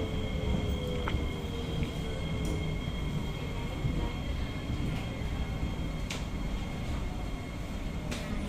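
Interior ride noise of an SMRT C151A metro train: a steady low rumble of wheels on track, with the electric traction motor's whine falling in pitch over the first couple of seconds as the train slows for the station.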